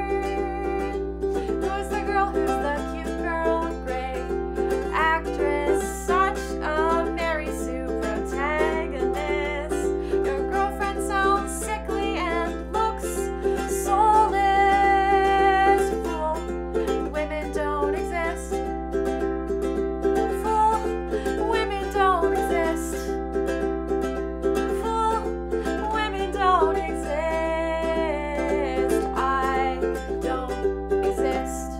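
Ukulele strummed in steady chords, with a woman singing a melody over it that stops and starts between phrases.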